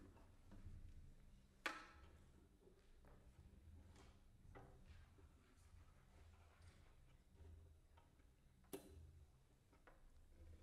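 Near silence with faint handling noise from a cello laid across the player's lap, broken by two sharp clicks, one about a second and a half in and one near the end. The cello is being prepared with sticky tack on its strings to change its tuning.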